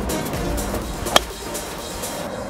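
Background music, with one sharp crack of a golf driver striking the ball off the tee a little over a second in.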